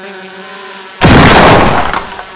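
Cartoon sound effect of a bee swarm buzzing, a steady drone. About a second in, a very loud crash-like burst of noise lasts most of a second over the buzzing.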